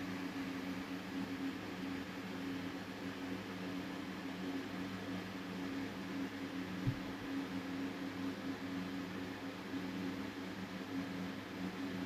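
Steady low background hum made of a few fixed tones over a soft hiss. There is one faint knock about seven seconds in.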